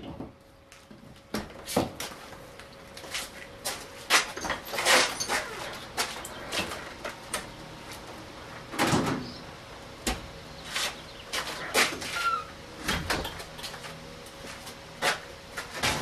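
Irregular knocks, clicks and bumps of things being handled and a door or cupboard being moved, with a short squeak about twelve seconds in. Underneath is the faint, steady hum of a small desk fan running.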